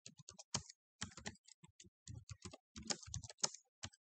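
Typing on a computer keyboard: a run of quick, irregular keystroke clicks with short pauses between groups of keys.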